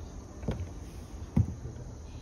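Two footsteps going down painted wooden steps, about a second apart, the second one louder.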